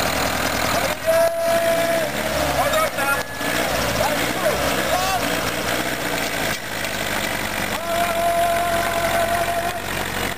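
Small homemade tractor's engine working under load, its pitch rising and falling as the tractor drags a load through mud, over a crowd's voices. A steady high tone sounds twice, shortly after the start and again near the end.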